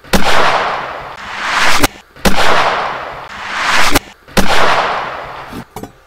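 Antique percussion-cap black-powder pistol firing: a loud bang with a long decaying tail, repeated three times. Between the bangs are two swells that build up and end in a sharp crack, the shot played backwards.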